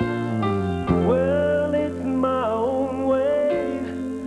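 Country band playing an instrumental break: a lead melody that slides up into its notes and wavers with vibrato, over a guitar and bass backing.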